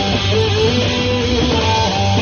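Live rock band playing, with a Stratocaster-style electric guitar carrying a melodic lead line of held, sliding notes over drums and keyboard. There is no singing.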